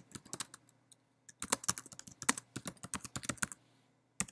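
Typing on a computer keyboard: a few keystrokes, a short pause, then a quick run of keystrokes from about a second and a half in until shortly before the end.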